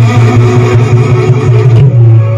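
A loud, steady low drone with fainter held tones above it, sounding amid the performance music.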